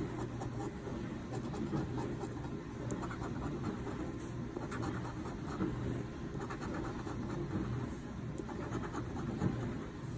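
A coin scraping the silver coating off a paper lottery scratch-off ticket, in short runs of quick scratching strokes with brief pauses between them. A steady low hum runs underneath.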